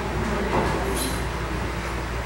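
Steady room noise picked up by the meeting-room microphones: a low hum under an even hiss. A faint brief rustle comes about half a second in and a light click about a second in.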